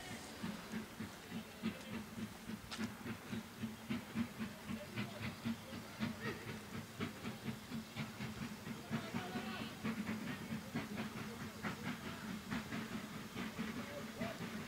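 BR Standard 9F 2-10-0 steam locomotive working, fairly quiet, its exhaust beats coming in a steady rhythm of several chuffs a second with some hiss.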